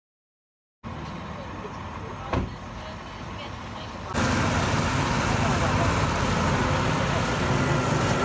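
Silence at first, then steady street ambience with a single knock. About four seconds in, a louder steady rumble begins: a Scania coach's diesel engine running as the bus moves across the lot.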